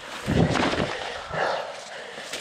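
A mountain biker breathing hard while riding, with two heavy exhales about a second apart. Under them runs a steady rush of tyre and wind noise.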